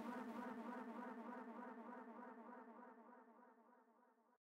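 A buzzy electronic synth drone on one low pitch, with a regular wobble about five times a second, fading steadily away.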